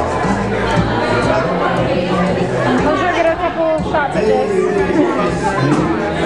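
Dance music playing over a sound system with a steady bass line, under the chatter of many guests talking over it.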